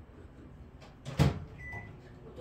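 A single sharp knock about a second in, then a short faint high beep.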